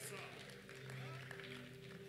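Soft background keyboard chords held steady at low volume, with faint room ambience.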